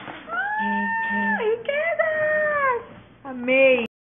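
High-pitched squealing cries: one long held note that bends down and runs into a wavering second cry, then a short squeal that rises and falls and cuts off suddenly near the end.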